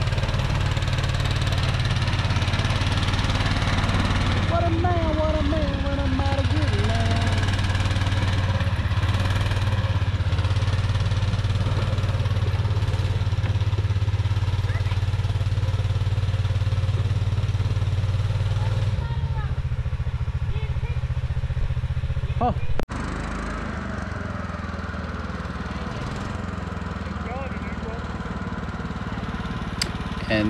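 Old Argo amphibious ATV's engine running steadily under way. About 23 s in there is a sudden break, after which the engine continues quieter.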